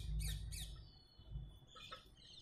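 Faint high-pitched chirps and squeaks: a few quick sweeping chirps at the start, a thin falling whistle, then more chirps near the end, over a low rumble in the first second.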